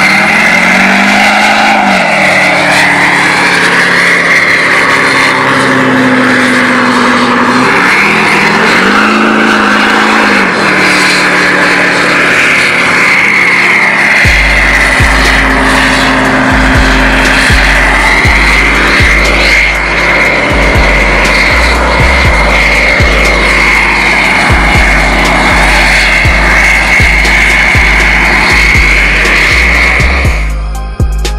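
Pickup truck doing a burnout: the engine revs up and down while the spinning rear tyres give a long, steady screech. Music with a heavy bass beat comes in about halfway through.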